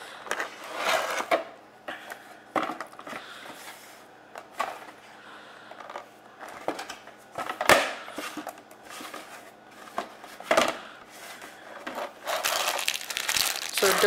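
Cardboard box and clear plastic packaging being handled as a model airliner's plastic tray is slid out of its box: light rustling with scattered sharp knocks, the loudest about two thirds of the way in, and denser plastic crinkling near the end.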